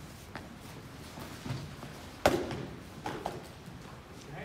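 Foam-padded sparring staffs striking during a bout: a few light taps, then one sharp, loud smack a little past halfway.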